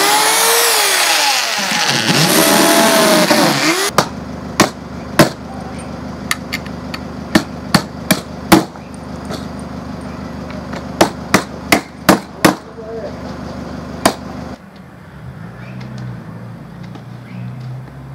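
Cordless drill boring through a cloth-covered plywood shield, its motor speed rising and falling for about the first four seconds. Then a hammer taps about twenty times in irregular runs at the steel shield boss, stopping about fourteen seconds in.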